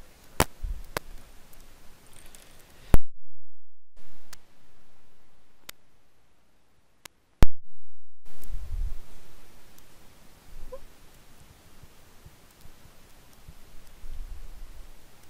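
A handful of sharp, isolated clicks over a low background hiss, the two loudest about three and seven and a half seconds in, with two short stretches where the sound drops out to dead silence.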